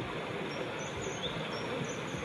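Steady outdoor ambient noise: an even hiss with faint, indistinct sounds underneath and no clear voice or music.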